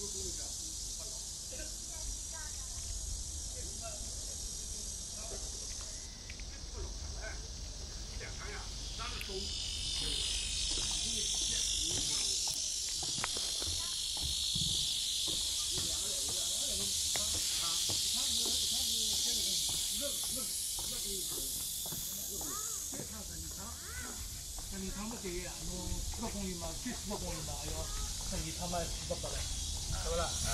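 Chorus of cicadas, a steady high buzzing hiss that swells louder about ten seconds in and stays up, with faint distant voices underneath.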